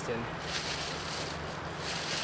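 Thin plastic shopping bag rustling and crinkling as a hand rummages in it and pulls out a bundle of shredded grapevine bark, starting about half a second in.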